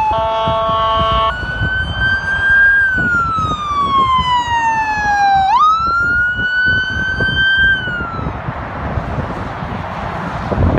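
Emergency vehicle passing on a highway: a steady horn blast of several tones, then a wailing siren that holds high, slides slowly down, jumps sharply back up and fades out about 8 s in. Traffic noise runs underneath.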